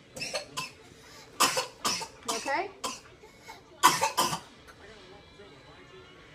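A woman coughing several times, with a run of coughs about one and a half seconds in and another about four seconds in.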